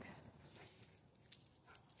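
Near silence, with a few faint clicks and rustles.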